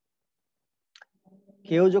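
Silence broken by one short click about a second in, then a man resumes speaking in Bengali near the end.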